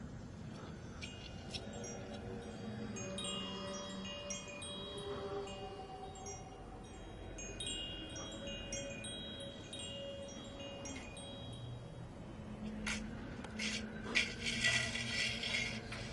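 Hanging wind chime tinkling, with scattered high ringing notes that come and go. Near the end a louder burst of scraping and clatter.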